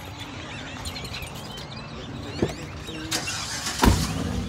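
Car engine running with a steady low rumble, with a short click about halfway through and a heavy thump near the end.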